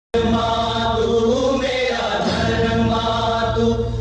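Song opening with a choir singing long held notes over a steady low drone, starting abruptly right at the beginning.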